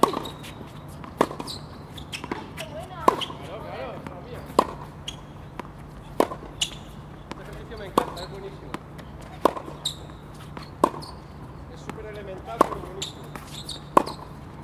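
Tennis ball struck back and forth with racquets in a baseline rally on a hard court: a sharp hit or bounce every second or two.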